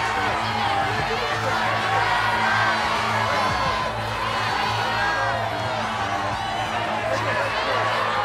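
Studio audience shouting and cheering over a steady, droning music bed while the contestant decides.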